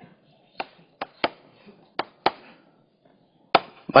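Chalk tapping and knocking against a chalkboard while writing: about six sharp, irregularly spaced taps.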